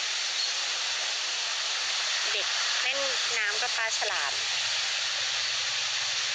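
A steady hiss runs throughout, with a woman talking briefly in the middle.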